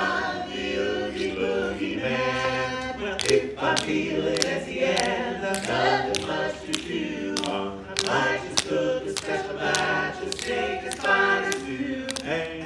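Barbershop quartet of men singing a cappella in close harmony, with no lyrics picked out. From about three seconds in, sharp clicks keep the beat, about one every 0.6 seconds.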